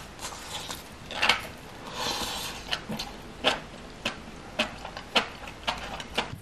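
Close-up chewing of a mouthful of grilled enoki mushrooms: wet mouth clicks and smacks about twice a second, with a longer, noisier smack about two seconds in.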